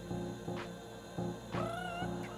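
Soulful house music with a steady beat and bass line, mixed live on DJ decks. About one and a half seconds in, a high wavering tone enters and glides upward.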